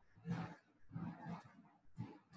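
Computer keyboard keys being typed, a few irregular muffled keystrokes, two to three a second.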